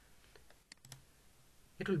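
A few scattered computer keyboard key clicks in the first second, then a man starts speaking near the end.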